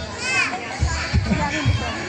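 Brief high-pitched squeal from a small child, rising and falling once about a quarter second in, over the murmur of voices in a room.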